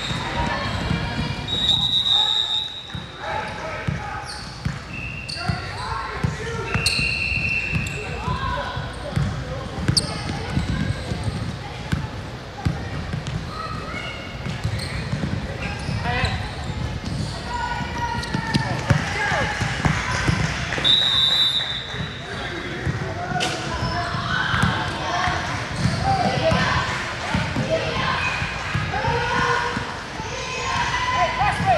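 Indoor basketball game on a hardwood court: a ball bouncing, sneakers squeaking in a few short high-pitched chirps, and players and spectators calling out, all echoing in a large gym hall.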